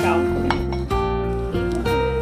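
Background music of held notes, over a few light clinks and scrapes of a metal spoon and spatula against a pan: near the start, about half a second in, and near the end.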